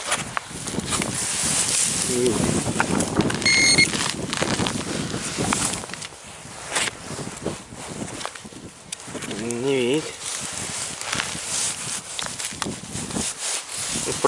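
A shovel digging into turf and dry grass, with soil and roots crunching and rustling close to the microphone. A short electronic beep sounds about three and a half seconds in.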